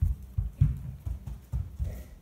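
A run of dull knocks on a hardwood floor, about six in two seconds and unevenly spaced.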